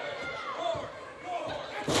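Faint crowd voices in an arena, then one loud sudden slam from the wrestling ring near the end, a wrestler's body or strike landing during the beat-down.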